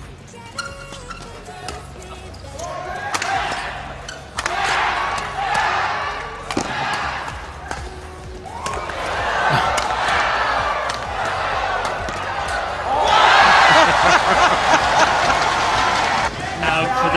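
Badminton doubles rally: rackets hitting the shuttlecock in quick sharp clicks and shoes squeaking on the court, under a crowd that cheers in waves and is loudest near the end.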